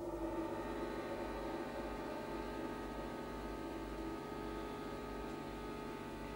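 Orchestra playing a sustained chord that comes in suddenly at the start and is held, slowly fading.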